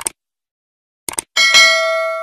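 Sound effects of a subscribe-button animation: a short click at the start and a quick double click about a second in, then a bright bell ding that rings on steadily.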